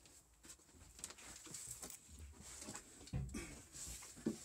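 Faint footsteps and scattered knocks of someone moving through a cramped room, with a louder thump a little after three seconds in.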